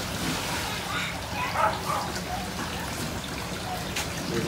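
Water from a hose-fed sprayer arch on an inflatable play pool spraying and falling back as a steady hiss of drops, with faint voices in the background.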